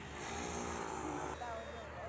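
Faint background voices, with an abrupt change in the sound about a second and a half in.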